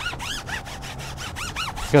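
Foam applicator pad rubbing oil-based tire dressing onto a car tire's rubber sidewall in quick back-and-forth strokes, about five a second, each with a rising-and-falling squeak.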